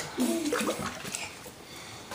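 Bath water sloshing in a bathtub as a hand scoops up bubble-bath foam, with a short voice sound in the first second.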